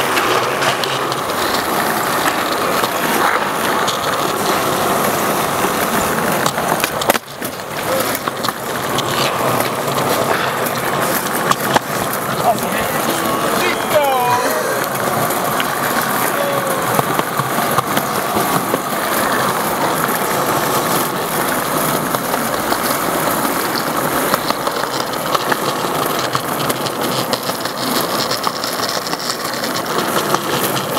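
Skateboard wheels rolling over smooth pavement, with knocks from the board during tricks on a ledge; the sound drops out sharply for a moment about seven seconds in.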